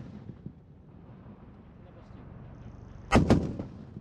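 Tripod-mounted heavy machine gun firing a short burst of about three shots a little more than three seconds in, each shot sharp with a ringing echo after it.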